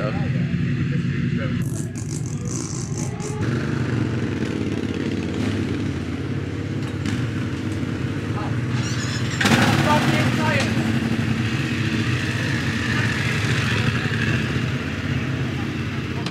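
BMW F 900 R parallel-twin motorcycle engine running steadily, growing louder about nine and a half seconds in as the bike pulls away.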